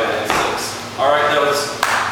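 A voice speaking in short untranscribed bits, with one sharp click or smack just before the end.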